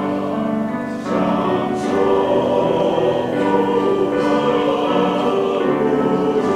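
Men's choir singing a hymn in Chinese in sustained chords, a new phrase starting about a second in.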